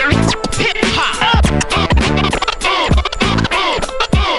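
Turntable scratching over a hip-hop beat: a vinyl record pushed back and forth under the stylus while the mixer's crossfader cuts it, giving fast rising and falling squeals over a steady kick drum.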